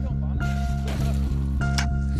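Background music: a sustained low chord with a higher note that comes in about every second and a bit.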